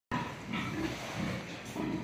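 Sows in a pig barn making low, irregular grunts that overlap one another.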